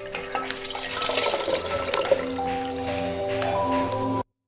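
Water poured from a plastic bag into a glass fishbowl, splashing and trickling, growing louder about a second in, under background music with held notes.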